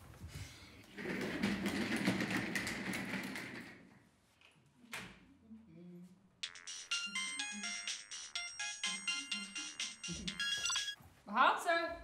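A mobile phone ringtone plays a quick melody of electronic notes from about six seconds in until near the end. Before it comes a few seconds of rustling, scraping noise.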